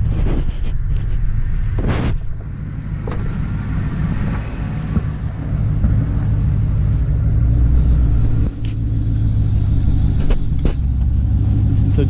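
Pickup truck engine idling with a steady low rumble, and a few short knocks along the way.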